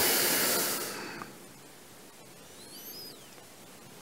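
A breathy hiss, like a long exhale, for about the first second, fading away. Then quiet outdoor ambience with a faint bird chirp about three seconds in.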